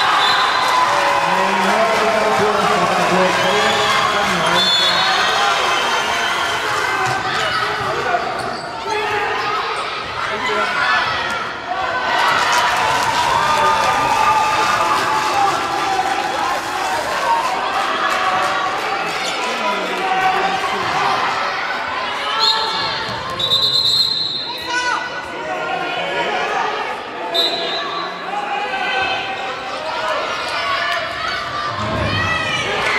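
Indoor handball game sounds in a reverberant sports hall: the ball bouncing on the hall floor, overlapping shouting from players and spectators, and a few short high-pitched tones.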